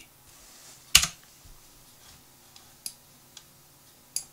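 Computer keyboard keystrokes: one sharp key press about a second in, then three faint clicks later.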